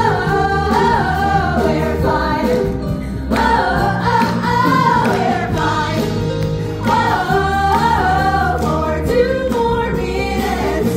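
Female cast singing together in a live musical-theatre number, amplified and backed by music with a steady beat.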